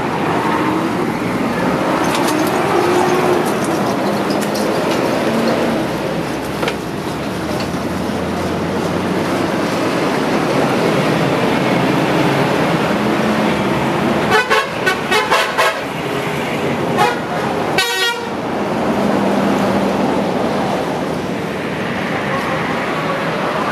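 Roadside traffic noise with vehicles passing, and a quick series of short horn toots about two-thirds of the way through, followed by one more brief horn blast.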